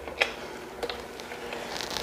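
A few faint light clicks of handling, about a quarter second in and again near the middle, over a low steady room hum.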